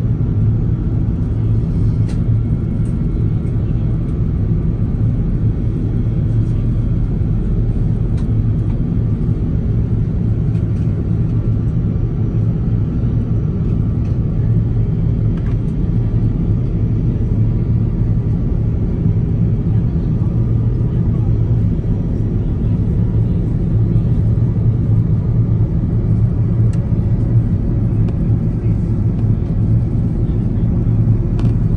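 Steady low rumble of an Airbus A380's engines and rushing air, heard inside the passenger cabin during the climb after takeoff.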